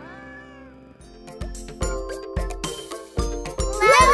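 A cartoon cat's short meow, one arching call in the first second, then instrumental music with regular drum hits starts about a second in.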